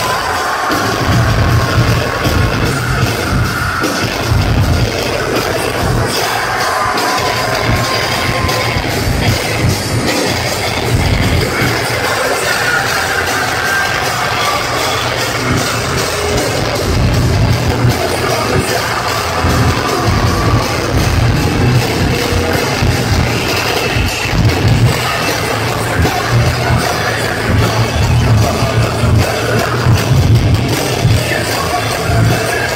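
Heavy metal band playing live at full volume: electric guitars, a pounding drum beat and a singing lead vocal, heard from within the audience.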